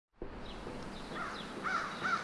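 A bird calling outdoors: a short rising-and-falling note repeated a little more than twice a second, starting a little over a second in, over a steady background hiss.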